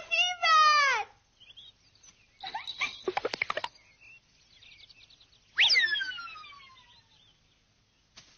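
Cartoon soundtrack effects: an animal-like cry that drops in pitch and fades out in the first second, a quick rattle of clicks about three seconds in, and a sharp whistle that swoops up and then falls away, ringing out for over a second.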